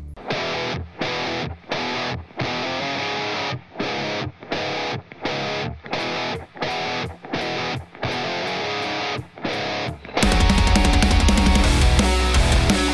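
Electric guitar played through a Revv G20 6V6 tube amp head, with a gain tone suited to heavy metal. A riff of chords stops and starts about every half to three quarters of a second. About ten seconds in it turns into a louder, heavier passage with much more low end.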